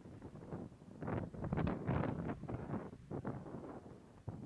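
Wind buffeting the microphone of a camera on a moving vehicle, in irregular gusts that are strongest about halfway through.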